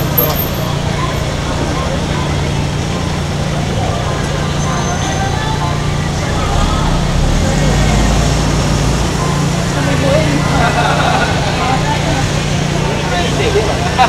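Busy street crowd chatter with a car passing close by, its low engine and road rumble swelling about halfway through.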